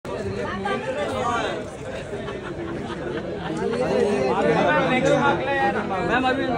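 Chatter of several people talking over one another, a busy babble of voices with no single clear speaker.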